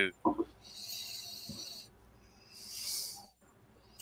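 Two breathy draws of air at a whisky glass held to the face, a taster nosing or tasting the dram: the first lasts about a second, the second is shorter, near the end.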